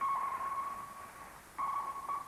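ASDIC (early active sonar) pings: a single steady tone struck at the start and fading over about a second and a half, then a second ping about a second and a half in. These are the sound pulses sent into the water to locate submerged U-boats by their echo.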